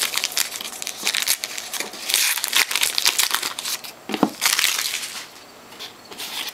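Clear plastic trading-card pack wrapper crinkling and crackling as hands open it, in several bursts. The loudest burst comes about two seconds in, and it thins out near the end.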